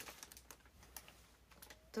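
A few faint, scattered clicks and crackles from the cellophane wrapping of a flower bouquet as it is handled and set down.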